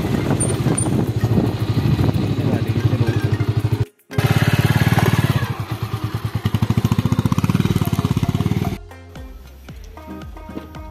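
Motorcycle engine running with a rapid, even firing pulse as the bike rides slowly along a road and into a dirt parking lot, cut off briefly about four seconds in. Near the end the engine gives way to background music.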